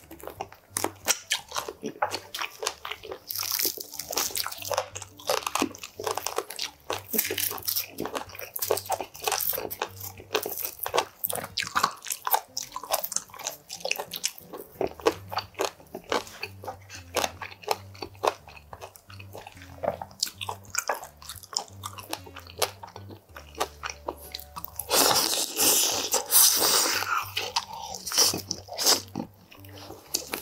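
Close-miked biting and chewing of oven-roasted chicken wings, with crunching and wet mouth sounds in a quick, uneven run. There is a louder stretch of a few seconds near the end.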